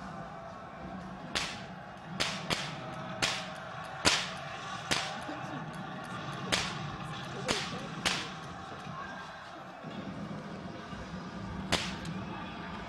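Stage gunfire effects: a string of about ten sharp cracks at uneven intervals, each with a brief ringing tail, bunched in the first two-thirds with one last crack near the end, over a low steady hum.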